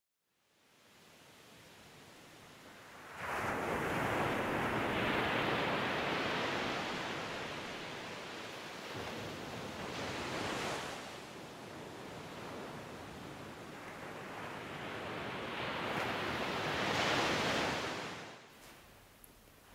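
Ocean surf: waves washing onto a shore. It is faint at first, grows loud about three seconds in, then rises and falls in three slow swells before dropping away near the end.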